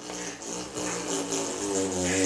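A man humming one long, steady low note through closed lips, held for as long as he can as a try at a record.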